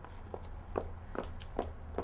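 Faint footsteps, five short steps about two and a half a second, over a low steady hum.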